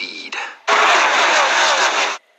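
Brief voice fragments, then a loud rushing whoosh sound effect lasting about a second and a half that cuts off suddenly.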